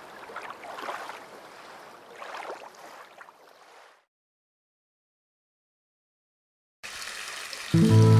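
Splashy water noise that fades out about four seconds in, then a few seconds of silence, then music with a heavy bass line starting near the end.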